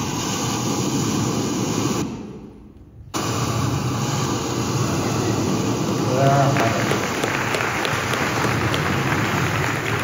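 Steady low rumble of a large hall's background noise, cutting out for about a second near the start, then an audience applauding from about six seconds in.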